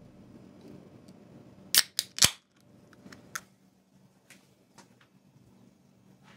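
Aluminium drink can's ring-pull being cracked open: three sharp clicks in quick succession about two seconds in, the last the loudest, followed by a few fainter small clicks.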